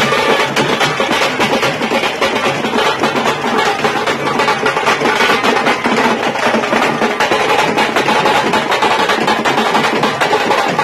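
Several tamte frame drums played together with sticks, a fast, dense tapanguchi beat of loud, sharp strokes that runs on without a break.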